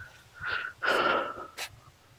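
Wheezy breathing close to the microphone: three breaths carrying a thin whistling note, the third the loudest and longest, about a second in. A short sharp click follows near the end.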